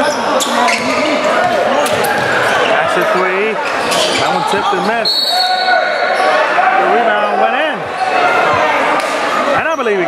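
A basketball being dribbled on a hardwood gym floor during a game, with players and spectators talking in the echoing hall. About five seconds in a short, steady, high whistle sounds, and play stops.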